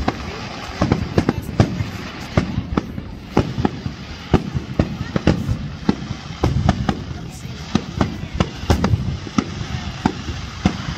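Fireworks display: a rapid, irregular string of bangs and cracks from bursting aerial shells, several a second, over a continuous low rumble.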